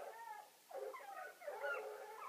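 Animal cries at close quarters from hunting hounds and a cornered mountain lion, heard played back through a television.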